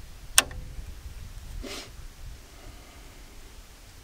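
A single sharp click of the switch being flipped on a solar bore pump's MPPT controller box, switching the pump onto solar power. A short soft hiss follows about a second later, over a low steady rumble.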